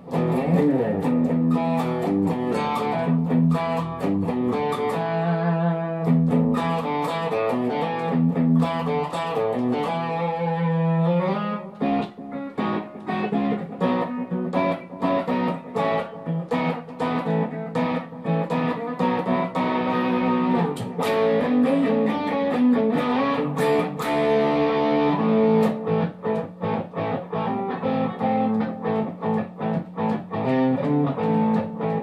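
Solo Stratocaster-style electric guitar playing song intros back to back, picked riffs and chords, with a short break about twelve seconds in where one intro gives way to the next.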